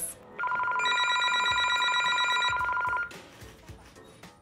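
Telephone ringing: one fast electronic trill on two pitches, lasting about two and a half seconds and cutting off about three seconds in.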